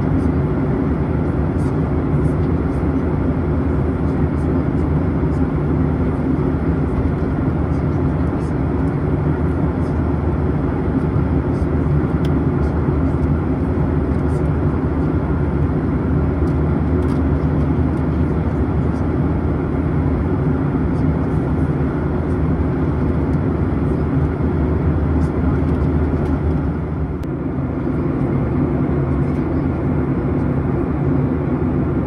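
Steady cabin drone of a Boeing 737-800 in cruise, engine and airflow rumble heard from inside the cabin by the window. It dips slightly near the end.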